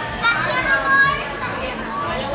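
Young children's high-pitched voices, playful vocalizing with no clear words, loudest in the first second, over background talk.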